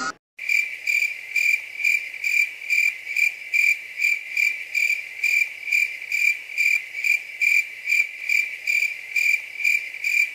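Cricket chirping sound effect: one high chirp repeating evenly about twice a second, cutting in suddenly just after the start. It is the stock "crickets" cue for an awkward silence.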